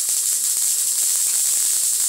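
High-voltage arc from a flyback transformer at about 15 kV running down the ridges of an insulator: a steady, high-pitched hissing crackle that does not let up.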